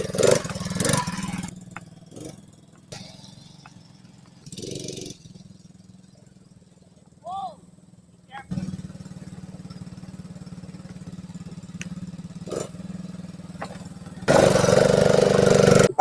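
Small ATV engine running steadily as the quad is ridden across the grass. A loud rushing noise, such as wind or handling on the microphone, covers it for the last couple of seconds.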